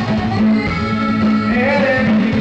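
Live grupero band playing through a PA: button accordion, guitars, bass and drums in a steady up-tempo Latin groove.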